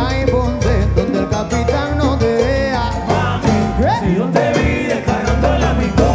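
Live salsa band playing, with a voice singing over a steady bass line and percussion.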